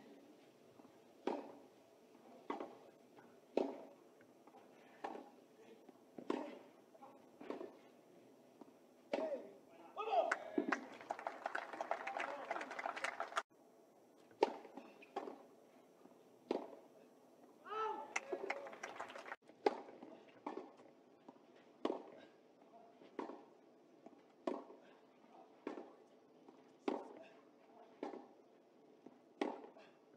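Tennis rallies on a clay court: rackets striking the ball and the ball bouncing, a sharp pop about every two-thirds of a second. The pops come in three runs, broken twice by a short spell of voice and crowd noise.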